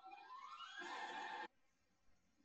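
A pitched cry with several overtones, rising in pitch for about a second and a half and then cut off abruptly, from the soundtrack of a video being played back.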